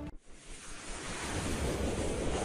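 Whoosh sound effect for an animated logo: a rush of noise that swells steadily louder, with a rising sweep near the end.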